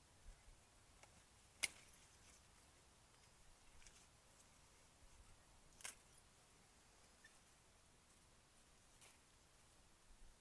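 Near silence broken by two short, sharp clicks from hands working among grape clusters and their stems on the vine, the louder about one and a half seconds in and a fainter one about four seconds later.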